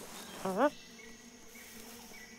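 Cartoon bee buzzing briefly, a short rising buzz about half a second in.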